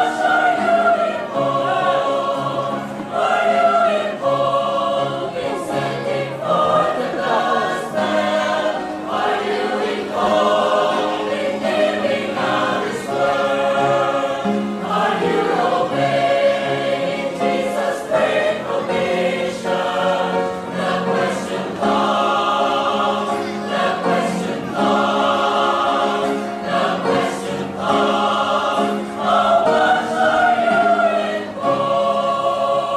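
Background music: a choir singing a slow choral song in sustained chords, continuing without a break.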